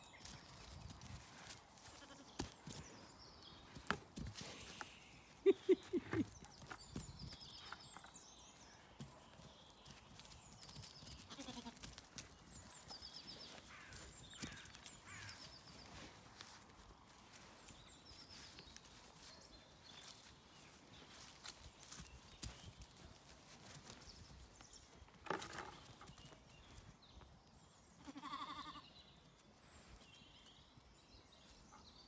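Zwartbles lambs bleating: a short, wavering bleat about five seconds in and another near the end. Between them come scattered thuds and scuffles of a lamb and dog playing on grass, and faint bird chirps.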